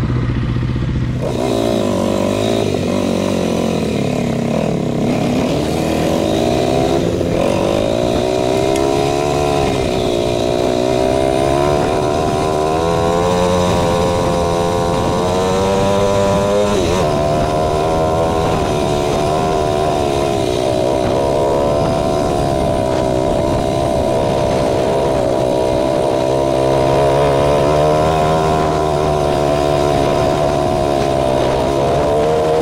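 Kawasaki KLX300R's single-cylinder four-stroke engine pulling away about a second in and running under throttle on a dirt trail. Its pitch rises and falls with speed, with a sudden drop about halfway through.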